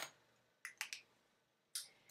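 Light plastic clicks of lipstick tubes being handled: two quick clicks a little over half a second in and one more near the end.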